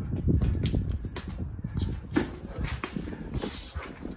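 Sparring with boxing gloves on a concrete slab: sneakers scuffing and stepping, and gloves landing, as irregular thuds and scuffs over a low rumble, with one sharper hit about two seconds in.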